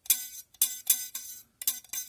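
A small coiled metal earthing spring on a circuit board being flicked with a fingertip. It twangs about six or seven times in quick succession, and each pluck rings briefly at the same pitch.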